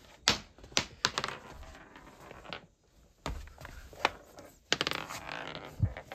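A run of sharp clicks and knocks, with a quick rattling cluster near the end, from a marble clattering and being handled on cardboard and plastic pieces of a model building.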